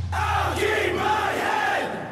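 Break in a heavy metal song: the drums and guitars drop out, leaving a held low bass note under several voices shouting together.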